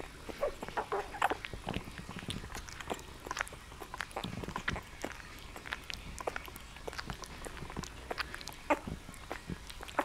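Nine-day-old bull terrier puppy making short, scattered squeaks and whimpers as it crawls about, with soft scratching of its paws on a terry towel.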